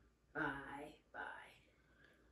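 Speech only: a voice quietly says "buy", then another short word.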